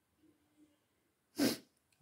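Near silence, broken once about one and a half seconds in by a single short, sharp burst of breath from a person.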